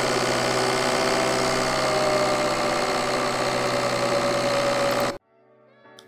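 A recorded turbocharger played back as a mix: a steady engine rush with whistling tones on top, the strongest a whine that drifts slightly lower in pitch. The two whistle components are turned down by 3 dB and 6 dB, to test a less annoying turbo whine. It cuts off suddenly about five seconds in.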